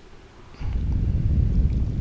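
Hot rinse water poured from a small ceramic cup into a glass tea press. It starts about half a second in as a low, noisy splashing that runs for about a second and a half.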